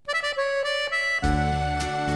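Instrumental opening of an Irish folk ballad recording: a few plucked notes, then about a second in the band comes in with bass and a held, reedy melody line.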